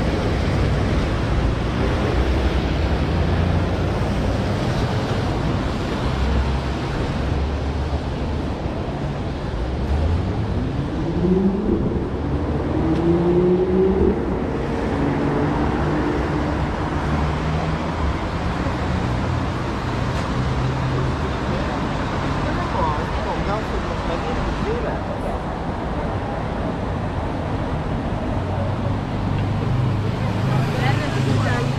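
Road traffic on a wet city street: a steady hiss of tyres and engines, with one vehicle's engine rising in pitch about ten seconds in and then holding.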